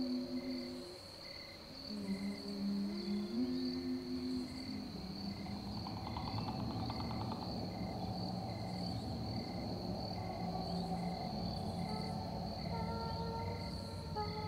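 Crickets and insects chirping: a steady high buzz with a short chirp about twice a second. Under it, slow music of long held low notes that step from pitch to pitch.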